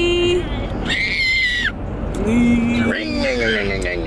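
Voices in a moving car: drawn-out wordless calls and a high-pitched squeal about a second in, over the steady low rumble of road noise in the cabin.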